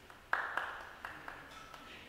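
A sudden sharp noise about a third of a second in, fading quickly, followed by a few fainter short knocks and clicks.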